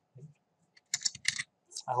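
Typing on a computer keyboard: a few faint key clicks, then a quick run of keystrokes about a second in.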